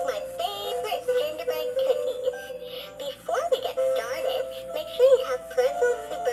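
Holly the Recipe Bear, an animated plush chef-bear toy, singing a high-pitched electronic song with musical backing, with a short lull a little before the middle.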